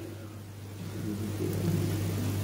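A pause in speech: the room tone of a large hall, a steady low hum with faint low background noise that grows slightly louder about a second in.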